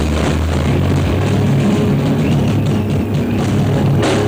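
A stoner rock band playing live: heavy electric guitars, bass and drums, with sustained low notes under steady drum hits.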